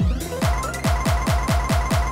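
Electronic beat from a Roland JD-Xi played through a Roland MX-1 mix performer with its roll master effect on. A pitch-dropping kick drum is retriggered in quick succession, about seven times a second, under steady held synth notes.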